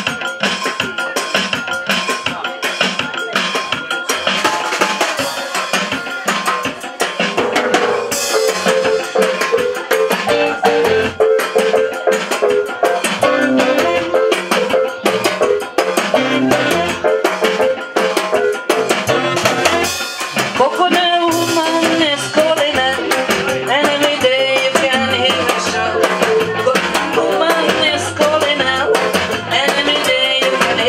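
Live band playing a calypso, with a driving beat on timbales and drum kit under a Roland Juno-D keyboard and acoustic guitar.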